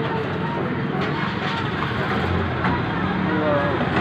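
Steady background noise with faint, indistinct voices in it.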